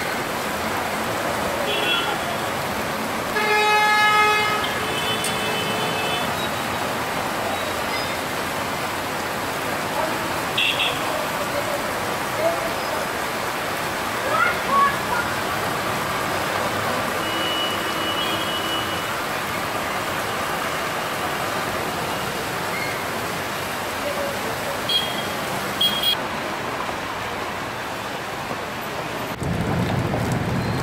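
Traffic driving through a flooded street in the rain: a steady hiss of rain and tyres in water, with several short car horn honks, the loudest a few seconds in.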